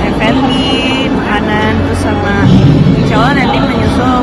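Speech: a woman talking, over the steady background noise of a crowded hall.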